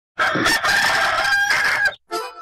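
A rooster crowing once: one long call that cuts off abruptly at the end.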